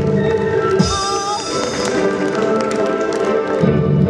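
Loud stage music with sustained pitched lines. About a second in there is a deep hit, followed by about a second of high hiss like a cymbal wash. The low bass drops out for a couple of seconds and returns near the end.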